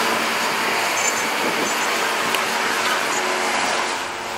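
Steady rushing noise of small prototype cars driving on a race track.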